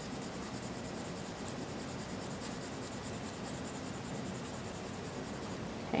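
Staedtler Ergosoft colored pencil shading lightly on cardstock: a soft, steady scratching of the pencil lead on the paper.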